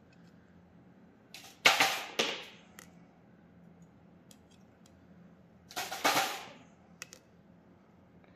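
A metal spoon scraping across cooling molten bismuth in a stainless steel pot: two sharp scrapes about four seconds apart, each trailing off over about a second, with a few faint clicks between them.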